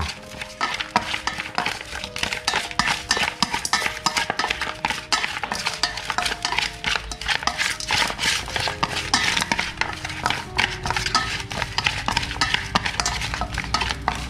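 Wooden chopsticks stirring and tossing chopped raw chicken in a metal basin to work in the marinade: a rapid, continuous clatter of clicks and taps of wood on metal.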